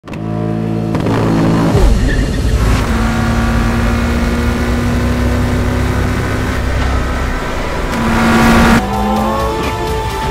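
McLaren 720S GT3X race car's twin-turbo V8 running hard at speed, its revs shifting sharply about two seconds in, then climbing late on before cutting off abruptly near the end.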